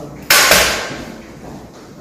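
M4 carbine's magazine being released and pulled from the magazine well: two sharp metallic clacks about a fifth of a second apart, with a fading ring after them.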